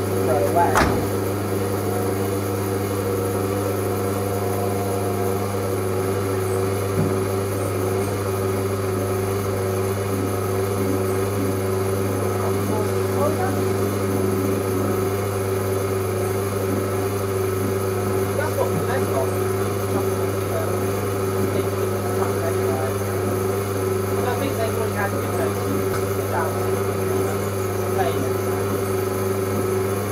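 Servis Quartz Plus washing machine running its distribute stage after draining the main wash, the drum turning with a steady hum.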